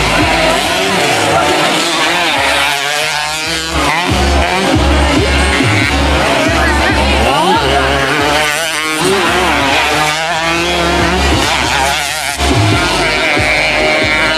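Underbone racing motorcycle engines revving hard, their pitch rising and falling as they accelerate and ease off through the corners. A steady thumping beat of background music runs underneath.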